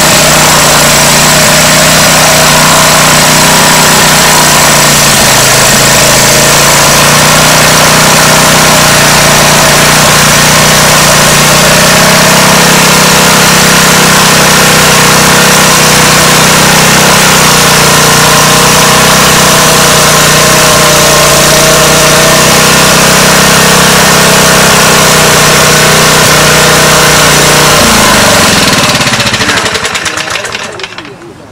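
Small single-cylinder air-cooled engine running loudly and steadily on vapour drawn from a GEET bubbler and reactor fuel processor. Near the end it slows, falling in pitch, and stops.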